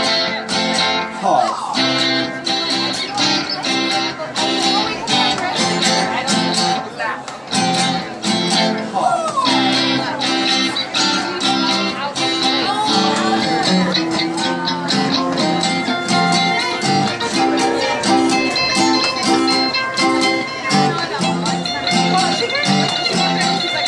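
Live band's guitars playing a strummed, steady-rhythm instrumental passage of a song, with a few sliding notes over the chords.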